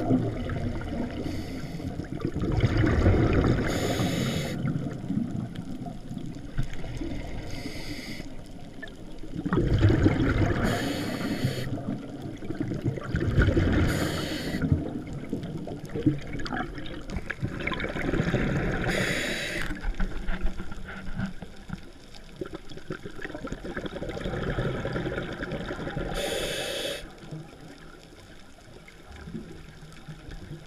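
Scuba diver breathing through a regulator underwater: a hissing inhale every few seconds, each followed by a burst of exhaled bubbles. The breathing is quieter near the end.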